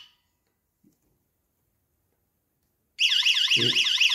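YoLink water leak alarm sounding because its sensor probe is wet: a high electronic tone warbling rapidly up and down in pitch. It cuts off right at the start, leaving about three seconds of silence, then starts again.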